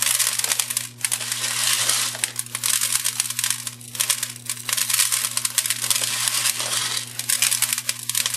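Tiny decorative rocks poured from a plastic bag onto a glue-coated glass jar, a dense continuous rattle and patter of small stones spilling onto a plastic tray, with a few brief lulls.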